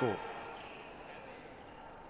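Quiet gymnasium room noise during a stoppage in play: a faint, even hum of the hall and crowd, slowly fading.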